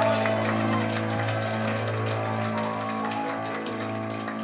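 A live gospel band's closing chord held and slowly fading, with scattered clapping from the choir and congregation.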